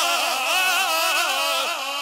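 A man's voice singing a long held note of a Punjabi naat, the pitch bending up and down in ornamented waves, amplified through a handheld microphone.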